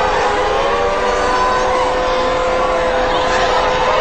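Civil defense air-raid sirens wailing, one steady held tone with fainter pitches drifting slowly up and down above it: the warning of an incoming nuclear missile attack. A noisy wash of crowd and street sound lies beneath.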